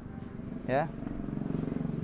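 A motorcycle engine running with a low, pulsing sound, growing louder about a second in and easing off near the end.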